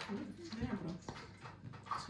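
A young baby making short vocal sounds, small grunts and coos, while being fed from a cup, with a couple of light knocks about half a second and a second in.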